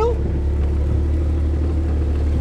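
Vehicle engine running steadily at low speed, a low rumble heard from inside the cab.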